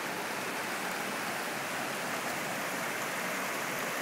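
Shallow creek water running over rocks and low rock ledges: a steady, even rush of rippling water.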